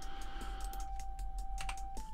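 Computer keyboard keys and mouse buttons clicking, a scatter of light taps, as shortcut keys are pressed and selections made.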